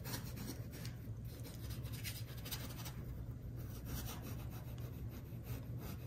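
Bristle paintbrush working acrylic paint onto canvas in soft, irregular rubbing strokes, over a faint steady low hum.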